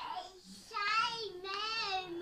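A young child singing a few drawn-out, high-pitched notes.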